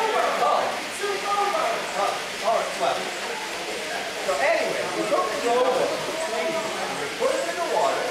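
Voices talking or vocalizing throughout, with no other distinct sound standing out.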